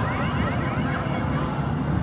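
Electronic arcade-game sound effect: a quick run of rising, siren-like chirps for about the first second, over the steady low din of an arcade floor.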